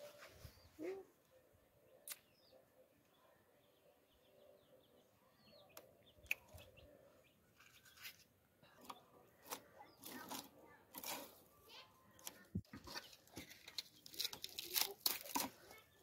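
Dry palm leaves and kindling sticks being handled and set alight. There are sparse, faint crackles and rustles that come quicker and louder over the last few seconds as the fire catches.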